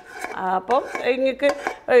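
A wooden spatula scraping and knocking against the inside of a metal pressure cooker pot, with a quick run of knocks in the first second as cooked vegetables are scraped out into a clay pot.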